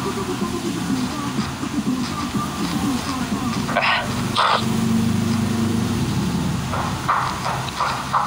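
Muffled, indistinct talking, with a couple of brief sharp noises about four seconds in.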